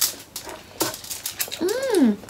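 Eating sounds from a mukbang of crispy lechon belly: a few sharp crunches from chewing the crackling skin, then near the end a short vocal 'mmm' that rises and falls in pitch.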